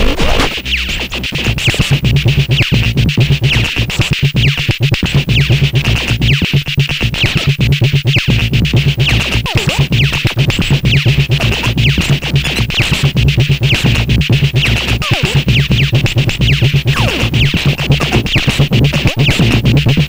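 Live electronic music from an Erica Synths Perkons HD-01 drum machine and modular synthesizers: a dense, hard, steady drum groove over a sustained synth bass, with the kick run through an EarthQuaker Data Corrupter. The level drops briefly about half a second in and the full groove returns about two seconds in.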